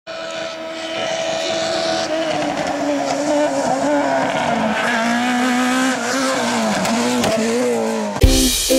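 A rally car's engine revving hard, its pitch rising and falling several times, growing louder.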